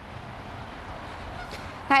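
Steady, even hiss of outdoor background noise on an open microphone, with a woman's voice starting right at the end.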